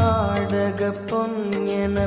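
Tamil devotional song to Shiva: a singer holds long, gliding notes over instrumental backing with a steady percussion beat.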